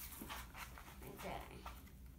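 Faint breathy sounds and soft murmurs from a young child, with no clear words.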